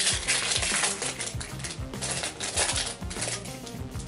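A foil Pokémon card booster pack crinkling and being torn open by hand, crackly rustling in bursts, over background music with a steady bass line.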